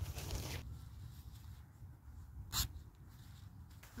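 Nylon fabric rustling as a stuff sack is worked over the end of the tarp's stick pole, with low wind rumble on the microphone. One short, sharp noise about two and a half seconds in.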